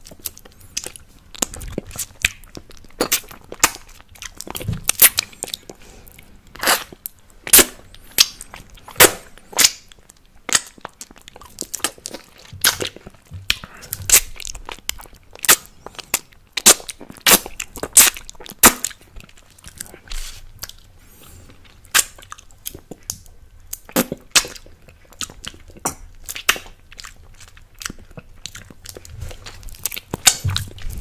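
Close-miked wet mouth sounds from sucking and licking an apple lollipop: an irregular run of sharp smacks and clicks of lips and tongue on the candy, sometimes several a second, with short pauses between.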